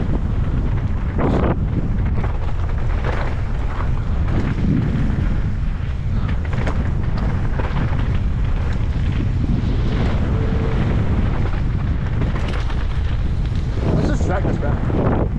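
Heavy wind rumble on a helmet-mounted camera's microphone as a mountain bike descends a rough gravel and dirt trail at speed, with frequent short knocks and rattles from the bike and tyres over stones.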